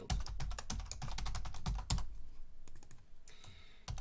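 Typing on a computer keyboard: a quick run of keystrokes for about two seconds, then a few scattered keystrokes.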